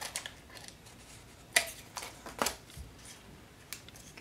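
Scissors snipping through crinkled tissue paper to trim the excess from the edge of a card panel. There are several scattered snips, with the two sharpest about one and a half and two and a half seconds in.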